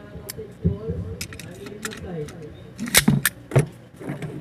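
Metal parts of a disassembled M16 rifle clinking and knocking as they are handled and set down on a wooden floor. The clicks come singly at first, then a louder cluster of clacks comes about three seconds in.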